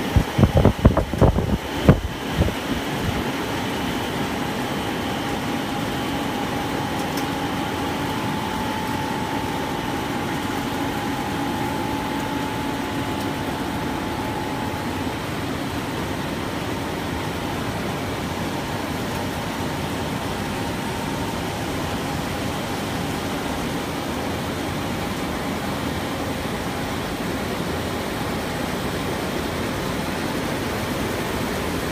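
Machinery of a spiral rubber hose production line running: a steady mechanical drone with a faint held whine, from the spinning caged winding drum and the extruder. A quick series of loud knocks comes in the first couple of seconds.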